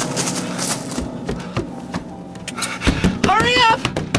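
Footsteps and handling rustle for a couple of seconds, then a voice making wordless sounds that swoop up and down in pitch.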